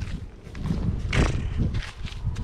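A zebu cow drinking from a plastic tub of water close by: irregular noisy slurps, the loudest about a second in.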